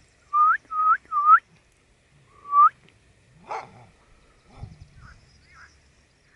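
Four short whistles, each rising at the end: three in quick succession, then one more about a second later. A single short bark-like call follows, quieter than the whistles.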